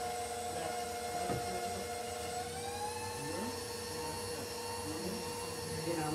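KitchenAid Pro 600 bowl-lift stand mixer's motor running steadily; about two and a half seconds in its whine rises in pitch as the speed is turned up, then holds at the higher speed.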